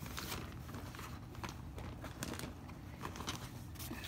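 Faint handling noise: scattered light clicks and short rustles, over a low steady hum.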